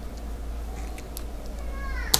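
A few soft computer keyboard clicks over a steady low hum. Near the end a faint, high, falling pitched call sounds in the background.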